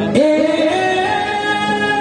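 A singer's voice comes in just after the start with a quick upward slide and holds one long high note over a sustained keyboard chord, part of a live Sambalpuri kirtan song.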